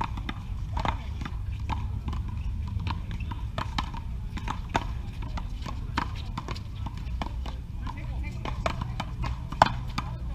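Paddleball rally: a rubber ball struck by paddles and rebounding off the concrete wall, sharp knocks about one to two a second, the loudest near the end.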